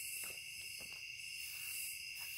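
Steady chorus of night insects, a continuous high buzzing held at a couple of fixed pitches, with a few faint rustles of nylon tent fabric being handled.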